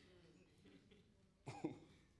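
A single short cough, in two quick bursts about one and a half seconds in, over faint room tone.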